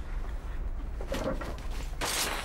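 A woman's short, choked sob about a second in, over a steady low hum.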